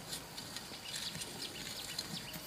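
Small birds chirping in short, quick falling notes over a faint steady high insect drone.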